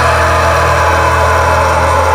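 Progressive deathcore song in a sustained, droning passage: a held distorted guitar and bass chord with no drum hits.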